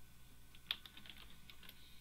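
Faint clicking of a computer keyboard and mouse: one sharp click about two-thirds of a second in, followed by several lighter taps.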